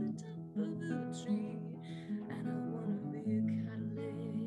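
Acoustic guitar strummed through a simple chord progression, the chord changing about every second, in a gentle folk song.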